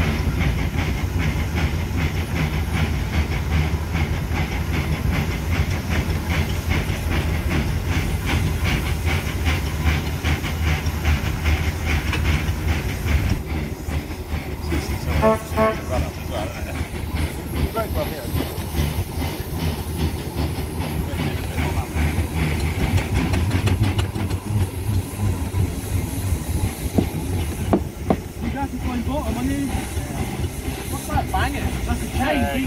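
Foden steam wagon running on the road: a fast, even exhaust beat over a steady low rumble and hiss, the beat softening after about halfway. A brief pitched tone sounds about halfway through.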